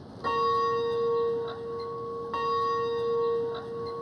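Gate bell rung by pulling its rope: two strokes about two seconds apart, each ringing on with a clear, steady tone.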